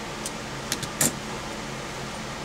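A few light clicks and a sharper knock about a second in as a metal dial caliper is handled and set down on a cutting mat and a steel wire gauge is picked up, over a steady room hum.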